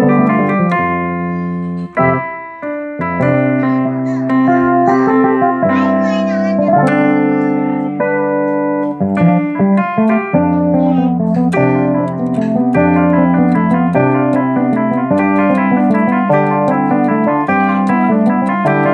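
Casio CTK-7200 keyboard playing an improvised jazzy jam: held chords and a moving bass line under notes played by hand, with a steady percussion tick. The music thins out briefly about two seconds in, then carries on.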